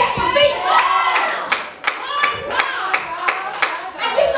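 Congregation clapping hands in scattered, irregular claps while women's voices call out in praise.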